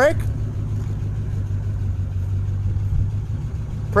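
A 1955 Chevrolet Bel Air wagon's engine idling steadily at a low, even pitch.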